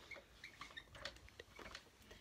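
Dry-erase marker writing on a whiteboard: faint, scattered short squeaks and taps of the tip on the board.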